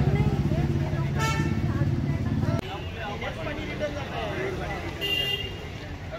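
Street traffic: a vehicle engine running close by, cutting off abruptly after about two and a half seconds, with a horn toot about a second in and another near the end.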